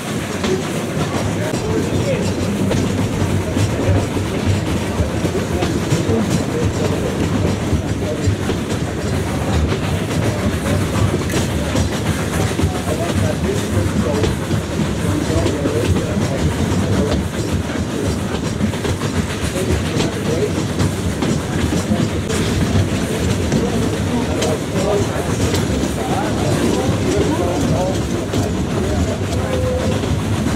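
Narrow-gauge railway coach of the Furka cog steam railway rolling along the track, heard from an open window as a loud, steady rumble scattered with small clicks.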